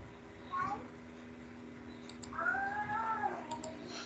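A single drawn-out pitched call, about a second long, that rises and then falls, heard faintly over a steady low hum in an online call's audio.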